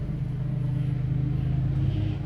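A steady low mechanical hum, like a motor or engine running, unchanged throughout.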